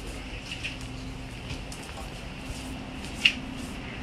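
Convenience-store room tone: a steady low hum with scattered faint clicks and taps, and one sharp click a little after three seconds in.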